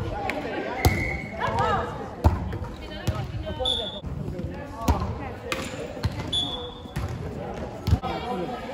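A volleyball being struck by hands and forearms during a rally, about five sharp hits echoing in a large sports hall, with players calling out and a few short high squeaks.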